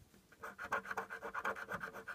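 Scratch-off lottery ticket being scratched by hand in quick, even back-and-forth strokes, which start about a third of a second in.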